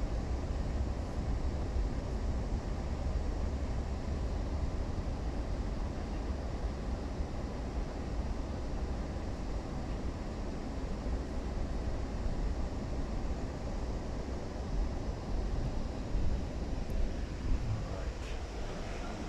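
Steady low rumble inside an Amtrak passenger car, with a few louder bumps near the end.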